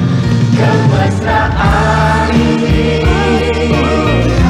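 Background music: a song with voices singing over a band with a steady bass line.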